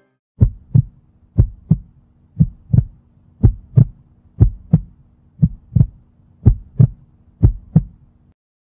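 Heartbeat sound effect: paired lub-dub thumps about once a second, starting about half a second in, over a low steady hum.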